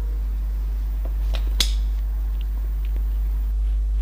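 Light metallic clicks from the removed drum-brake shoe assembly and its springs as it is handled: two sharp clicks about a second and a half in, then a couple of faint ticks, over a steady low hum.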